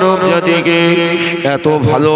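A man's voice chanting a melodic line into a microphone, with long held notes that waver and bend in pitch in an ornamented style.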